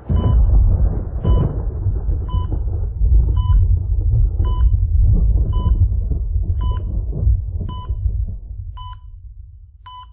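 Trailer sound design: a loud, deep rumble under a short electronic beep that repeats about once a second. The rumble fades away near the end.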